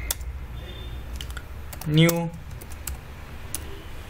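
Typing on a computer keyboard: irregular, scattered key clicks.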